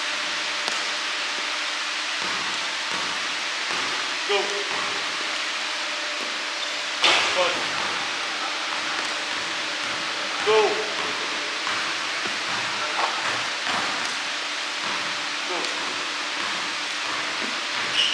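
Steady hiss of gym ambience with a few basketball bounces and sneaker squeaks on a hardwood court, the loudest about seven and ten and a half seconds in.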